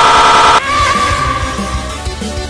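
A loud, harsh buzzing sound effect cuts off suddenly about half a second in. It leaves a single ringing tone that fades away over the low thumping beat of electronic background music.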